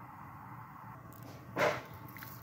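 Salt poured from a hand into a pot of herb broth, a short hiss of about a third of a second near the end, over a low steady background.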